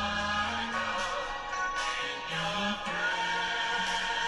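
Worship song with a choir singing long held notes.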